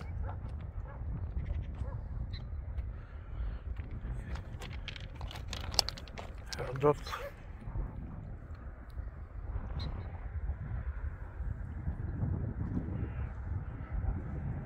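Wind rumbling on a handheld microphone outdoors, with scattered crunching steps on stone track ballast. A brief voice or call sounds about seven seconds in.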